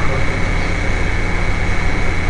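Steady background noise: a low hum and a hiss, with a thin, high whine held at one pitch.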